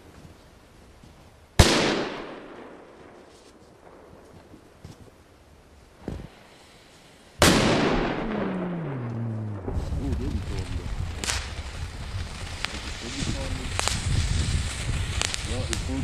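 Two loud firecracker bangs about six seconds apart, each trailing off in a long echo, with a smaller pop between them. In the second half a steady hiss with scattered cracks builds as a ground firework burns.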